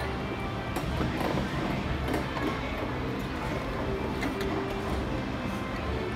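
Carousel music playing steadily while the ride turns.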